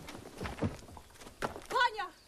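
A few sharp knocks and dull thuds, then a short, high-pitched vocal cry that rises and falls near the end.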